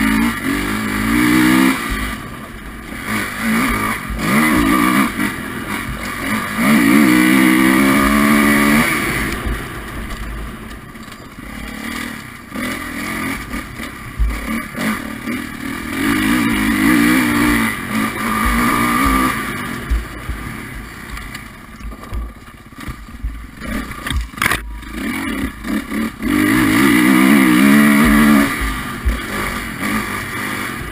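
Kawasaki dirt bike engine under hard riding, revving up and easing off again and again, its pitch climbing in several loud surges. One sharp knock sounds late on.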